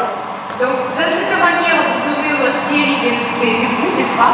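Speech only: a person talking without a break.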